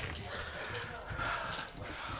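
Faint sounds of a small dog at play, with a few soft knocks.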